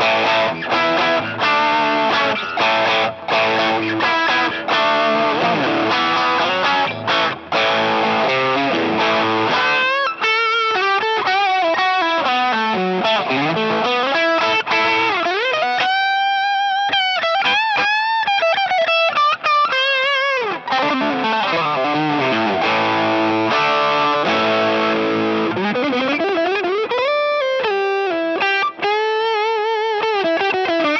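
Solo electric guitar (a G&L Fullerton Deluxe Bluesboy) played through a JOYO Zip Amp overdrive pedal set to its compressed mode, with no backing track. The first ten seconds or so are overdriven chords and riffs. Then come single-note lead lines with string bends and vibrato, including a long held bent note in the middle. Fuller chordal playing returns near the end, with a sliding rise.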